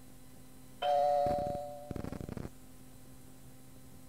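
Cueing chime on a recorded answering-machine message cassette. It marks three seconds before an outgoing message starts. A bright chime tone rings about a second in and fades, followed by a quick fluttering run of pulses that stops about two and a half seconds in.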